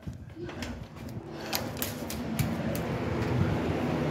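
Rustling and handling noise from a phone being moved about and held against clothing, with a few sharp clicks near the middle.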